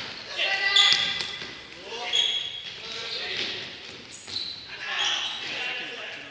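Indoor futsal play: a ball being kicked and bouncing on a wooden gym floor, with players calling out in short shouts, all echoing in a large hall.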